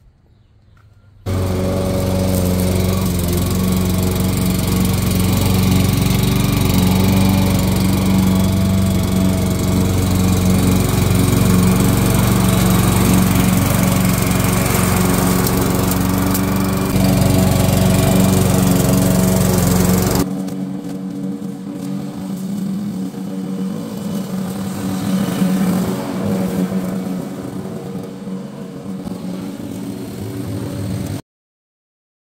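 A Benchmark 200 cc single-cylinder, no-choke lawn mower engine starts about a second in and runs steadily and loud. After about twenty seconds it sounds fainter and thinner, farther off as the mower is pushed across the grass.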